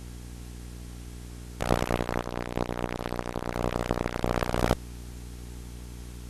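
Steady electrical hum from the television, with a harsh, buzzy burst of distorted audio starting about a second and a half in and cutting off suddenly about three seconds later, as the set switches between channels.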